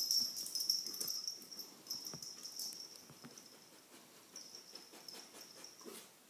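A dog whining in a high, thin tone that breaks off and starts again in short stretches, loudest at the start and fading later.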